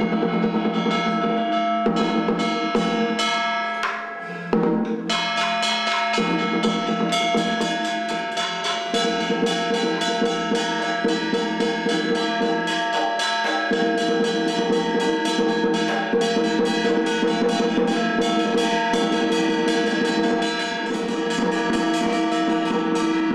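Taoist ritual music ensemble playing: a fast, dense beat of drums and percussion under steady, held wind-instrument notes. It breaks off briefly about four seconds in.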